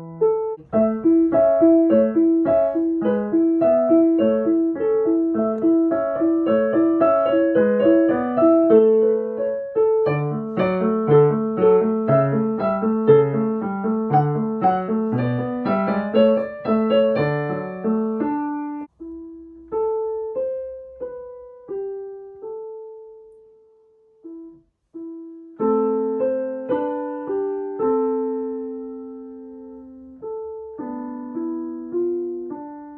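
Yamaha CLP-745 Clavinova digital piano played with both hands: a flowing run of notes for the first half, then slower single notes and a brief pause, with chords starting again near the end.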